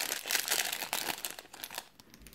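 Small clear plastic bag crinkling as a metal pin is worked out of it by hand, a dense crackle that dies away near the end.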